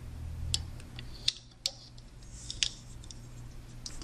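A few light, sharp clicks and ticks, spaced irregularly, as rubber loom bands are stretched and slipped onto the plastic pegs of a Rainbow Loom, over a faint steady hum.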